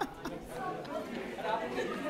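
Several people chattering at once in a large room, with overlapping voices and no single clear speaker.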